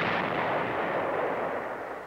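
A demolition charge detonates a buried mine: a single blast whose noise dies away gradually over about two seconds.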